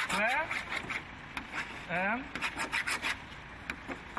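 A car's painted bonnet being scratched with a small sharp object held in the hand, a series of short scraping strokes that come thickest in the second half, with brief male voices in between.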